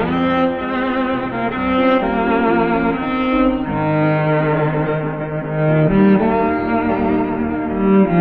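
Cello with piano accompaniment, the cello playing a slow melody of long held notes with wide vibrato.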